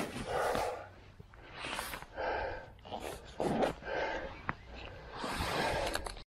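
A mountain-bike rider breathing hard, a string of heavy breaths about once a second, over a steady low rumble from the ride.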